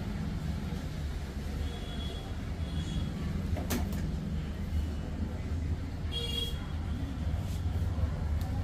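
A steady low rumble of background noise, with one sharp click a little under four seconds in and a brief faint high tone about six seconds in.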